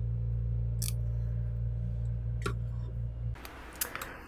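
Benchtop blood-bag tube heat sealer humming steadily while it seals the tubing into aliquot segments, cutting off about three and a half seconds in. A few sharp clicks are heard over the hum.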